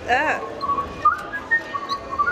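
A whistled tune: a string of held high notes stepping up and down in pitch, opening with a brief wavering note.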